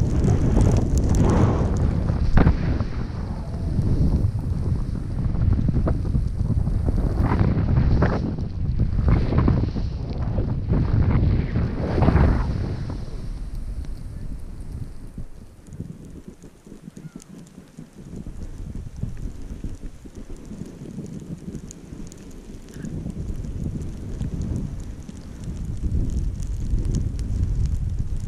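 Wind rushing over an action camera's microphone on a fast downhill run on snow, with repeated swells as the edges carve and scrape through the snow in turns. The noise eases off about halfway through, to a lighter, steadier rush.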